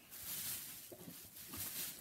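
Rustling and handling noise of bags and fabric being moved about, an uneven rustle that swells and fades.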